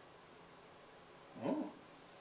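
A man's short, soft 'ooh' of mock wonder about one and a half seconds in, its pitch rising then falling, against a quiet room.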